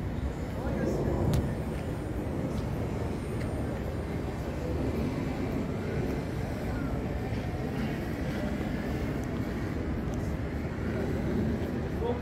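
Outdoor exhibition-ground ambience: a steady low rumble with indistinct background voices.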